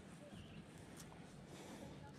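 Near silence: faint outdoor ambience, with one soft click about a second in.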